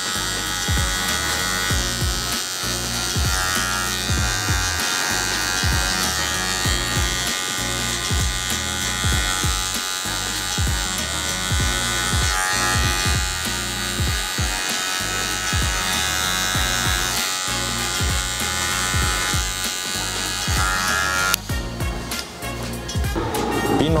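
Cordless hair clipper buzzing steadily as it cuts short hair, blending a skin fade with a guard, over background music. The clipper's buzz stops near the end.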